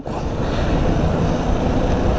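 Honda Biz single-cylinder motorcycle riding along at steady speed: engine and road noise mixed with a steady rush of wind on the microphone.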